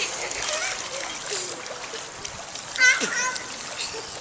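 Pool water splashing as people move about in it, with a child's short high-pitched squeal about three seconds in.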